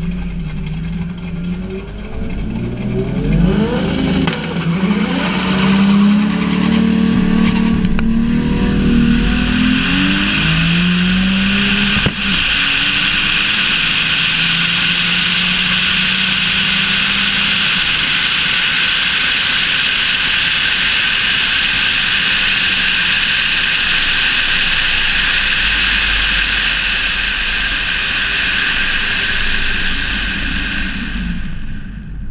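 Toyota Supra's engine launching hard down the drag strip on a quarter-mile pass, its pitch climbing again and again as it pulls through the gears. A sharp crack comes about twelve seconds in, then a steady loud wind rush over the hood-mounted camera as the car coasts.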